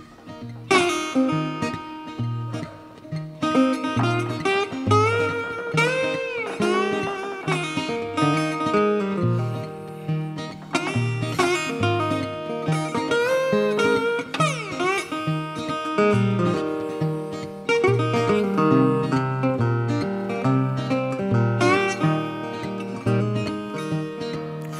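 Two acoustic guitars, one a metal-bodied resonator guitar, playing a blues intro: a steady picked bass line on the beat under lead lines with notes that bend up and down in pitch.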